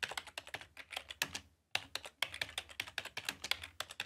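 Typing on a laptop keyboard: quick, irregular key clicks, with a short pause about a second and a half in.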